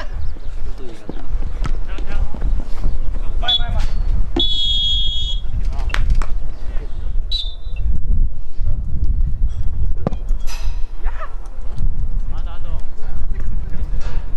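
Referee's whistle: one steady blast lasting about a second, a little after four seconds in, with scattered shouts from players and a constant low rumble.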